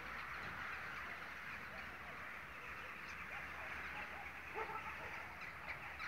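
Faint steady outdoor background hiss, with a few faint distant bird calls in the second half.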